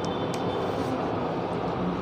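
Steady, even background noise of a room, a broad hiss with a faint high whine, and one faint click about a third of a second in.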